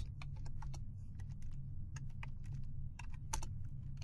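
Computer keyboard being typed on: irregular key clicks coming in small runs, over a low steady hum.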